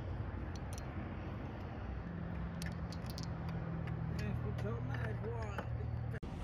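A steady low mechanical hum, with faint voices in the background near the end and a few light clicks.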